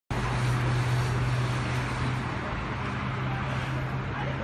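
City street traffic noise with a steady low engine drone.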